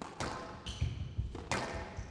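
Squash rally on a glass court: several sharp cracks of the ball off racket and walls, the strongest just after the start and about a second and a half in. Between them come low footfall thuds and brief high squeaks of shoes on the court floor.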